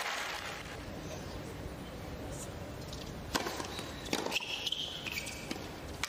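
Quiet tennis arena ambience, a low steady crowd hum, with a few sharp taps about three and four seconds in from a tennis ball being bounced on the hard court before a serve.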